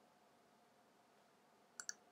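Near silence: room tone, with two or three faint short clicks near the end.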